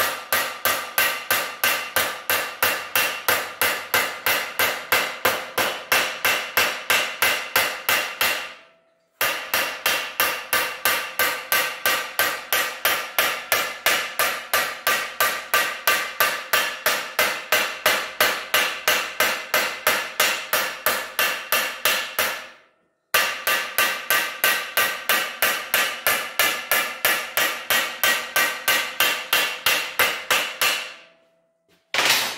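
Hand hammer beating the edge of a sheet-steel panel over a clamped angle-iron straight edge, folding it into a rolled edge. It strikes in fast, even blows at about four a second, each with a metallic ring. The hammering breaks off twice, about a third and about three quarters of the way through.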